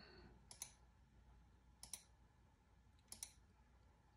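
Three faint groups of sharp computer clicks, some doubled, about a second and a quarter apart, as pages are clicked through on a laptop, over near silence.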